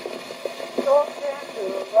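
Playback of an 1888 graphophone wax cylinder recording: a thin, muffled voice speaking a few unclear words, half buried under steady surface hiss and scattered crackle.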